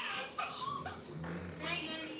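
A chihuahua making several short, high-pitched sounds.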